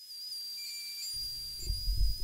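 Kerr SonicFill vibrating handpiece running as it extrudes bulk-fill composite into the cavity: a steady high-pitched whine, joined about halfway through by a low rumble.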